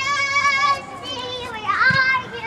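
Girls shouting on the field, several high-pitched voices at once: long held calls, then a rising shout near the end.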